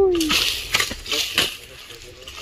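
Dry grass and twigs crackling and rustling, with a few sharp snaps about half a second to a second and a half in, after a voice trails off at the start.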